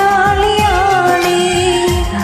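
A woman singing a Malayalam Christian song, holding one long note with vibrato over a karaoke backing track with a steady drum beat. The note ends near the end.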